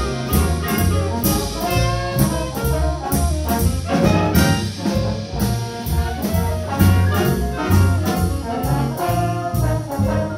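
Big-band jazz ensemble playing live: saxophones, trumpets and trombones together over a bass line, with a steady beat.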